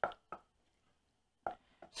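A few short knocks of a wooden spoon against an enamelled pot while stirring a thick rutabaga mash: two near the start and two more about a second and a half in.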